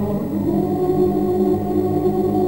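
Choir music with held, wordless chords over a steady low bass, the harmony shifting about half a second in.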